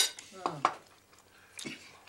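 A metal fork clinks sharply against a plate at the start, followed by a couple of lighter cutlery clicks.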